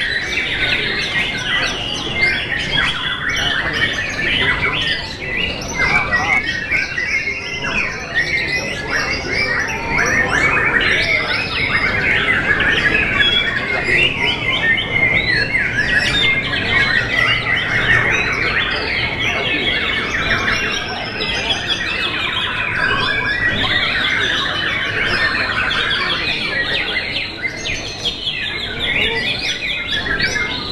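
White-rumped shamas singing without pause: a dense run of quick whistles, trills and chattering notes from several birds at once, fullest in the middle stretch.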